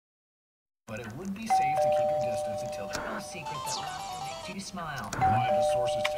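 A two-tone ding-dong chime, a higher note then a lower one, each held for about three seconds. It sounds once about a second and a half in and again near the end, over a mix of music and voices. It starts after almost a second of silence.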